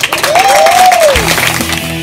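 Audience applause with a tone that glides up and back down over it, cut off about a second in by music with a steady bass line.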